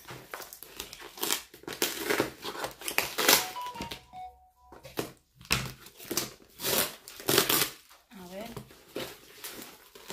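Parcel packaging crinkling and tearing as it is unwrapped by hand, in irregular bursts.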